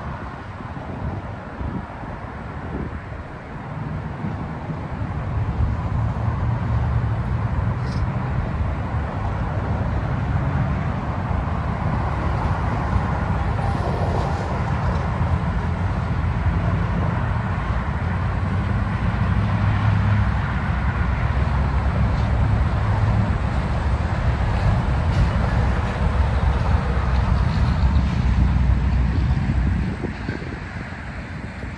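Wind buffeting the microphone outdoors: a steady, uneven low rumble with a hiss over it, growing louder about four seconds in.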